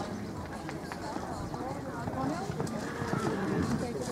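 Indistinct talking of nearby people, with the hoofbeats of a horse cantering on a sand arena.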